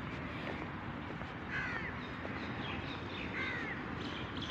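Birds calling outdoors: two short calls, the first about one and a half seconds in and the second near three and a half seconds, over a steady background hum of outdoor noise.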